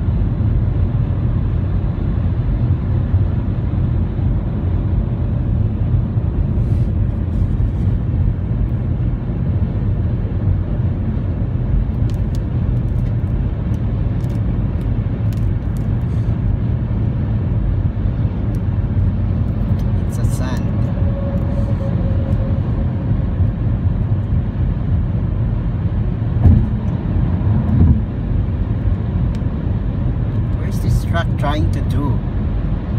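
Steady low road and engine rumble inside a car's cabin while driving at highway speed, with two short thumps near the end.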